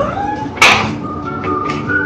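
Bichon Frise whimpering for attention, a short high whine early on, followed about half a second in by a brief, loud, noisy burst.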